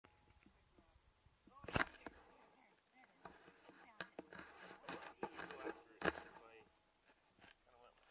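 Faint voices talking in the distance, broken by two sharp knocks, one a little under two seconds in and one about six seconds in.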